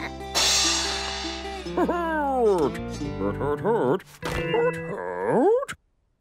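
Wordless cartoon character vocalizations, several long swoops up and down in pitch, over background music, with laughter near the end.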